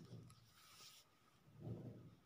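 Near silence: quiet kitchen room tone, with a soft low thump near the end.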